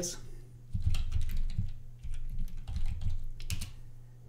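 Computer keyboard typing: an uneven run of keystrokes entering a terminal command, with a few sharper clicks near the end.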